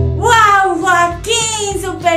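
A high, sing-song female voice making drawn-out exclamations with sweeping, falling pitch, close to singing. A held music chord cuts off just before it.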